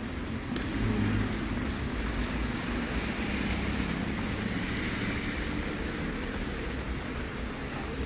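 A car passing along a wet street: engine rumble and the hiss of tyres on wet asphalt, swelling about a second in and easing off after the middle.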